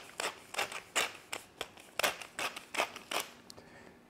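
Hand-turned pepper mill grinding peppercorns: a run of dry grinding clicks, about three a second, that stops shortly before the end.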